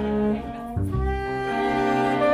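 String quartet with double bass playing a slow waltz: held bowed chords over a low bass line, thinning briefly about half a second in before a new chord enters.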